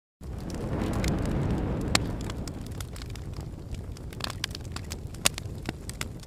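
Fire sound effect for a title sequence: a low rumble that swells over the first second and a half and then eases off, with scattered sharp crackles and pops throughout.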